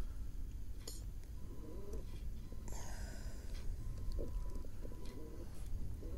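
Quiet outdoor ambience on open water: a low, steady wind rumble on the microphone, with a brief soft hiss about three seconds in.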